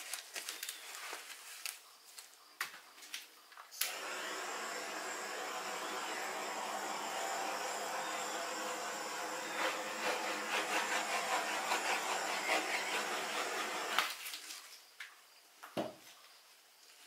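Handheld torch lit with a click about four seconds in, its flame hissing steadily for about ten seconds before it shuts off, as it is passed over wet acrylic pour paint to pop air bubbles. Light handling clicks come before it lights.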